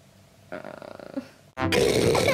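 A girl's voice: a faint murmur, then about one and a half seconds in, a sudden loud, rough yell.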